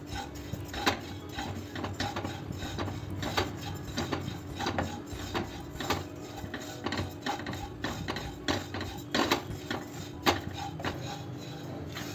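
Wooden spatula scraping and tapping around a stone-coated kadhai while cumin seeds are dry-roasted, the seeds rattling against the pan: irregular clicks and scrapes over a low steady hum.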